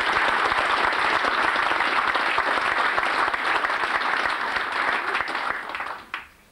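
Audience applauding: dense, steady clapping from a seated crowd that tapers off near the end.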